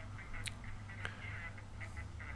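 A pause between speakers filled with a steady low background hum and faint noise, with a faint click about half a second in.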